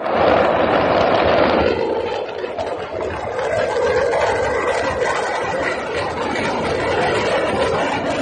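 Loud, continuous rumbling noise with no distinct bangs: the on-scene sound of a firecracker factory fire.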